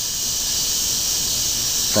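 A chorus of cicadas (called locusts locally) buzzing steadily in the trees, a prominent high, even drone with no break.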